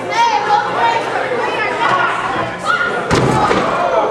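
A wrestler's body slamming onto the wrestling-ring mat with one loud thud about three seconds in, over the voices of the crowd.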